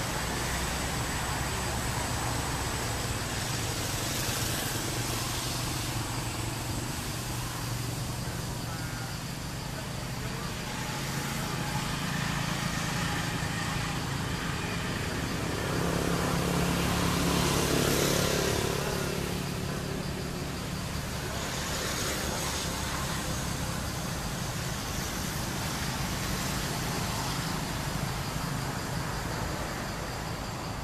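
Outdoor ambience with a steady low rumble of road traffic; one vehicle passes, growing louder about sixteen seconds in and fading by twenty. A thin steady high tone runs underneath.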